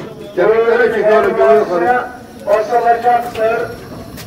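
Speech only: a man's voice talking in two short phrases, the first starting about half a second in and the second about two and a half seconds in.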